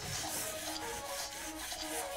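Robosen Bumblebee G1 Performance toy robot dancing: its servo motors whir and rasp as the limbs move, over music with a steady beat.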